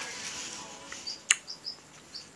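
Coupon insert pages being handled and flipped, with a sharp paper snap a little past halfway. A few short, high bird-like chirps sound around it.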